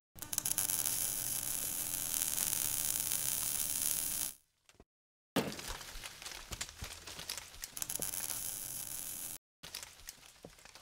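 Logo-reveal sound effect: a hissing, static-like noise for about four seconds, a short break, then a second crackling stretch with scattered clicks that stops shortly before the end.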